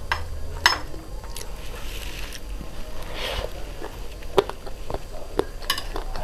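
Steel chopsticks clinking against a ceramic plate as food is picked up: a few sharp separate clinks, with soft chewing between them.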